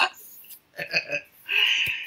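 A woman's brief laugh, followed by a few short, quieter throaty vocal sounds.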